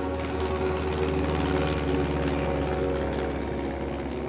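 Propeller aircraft engines droning steadily in flight: a deep, even rumble with a fast beat, under sustained background music.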